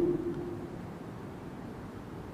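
A pause in a man's speech: a held tone from his last word fades out in the first moment, then faint, steady room noise through the microphone.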